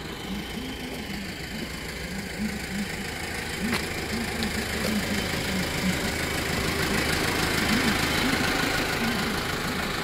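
A truck engine idling steadily, getting somewhat louder in the second half, with a single click about four seconds in.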